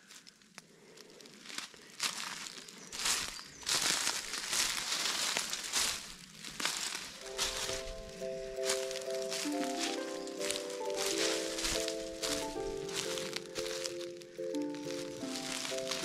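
Footsteps crunching and rustling on a forest path, irregular and uneven. About seven seconds in, background music starts: a calm melody of held, stepping notes.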